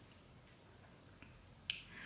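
Near silence with a single short, sharp click about three-quarters of the way through.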